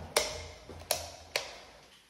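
Three sharp footsteps on a hard floor at the top of a stone staircase, each short and fading fast.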